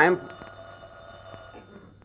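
An old telephone bell ringing in a studio sound effect, one continuous ring lasting about a second and a half.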